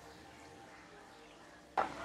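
Faint, steady sizzle of sesame-coated onde-onde balls deep-frying in bubbling oil over medium heat. A brief louder sound cuts in near the end.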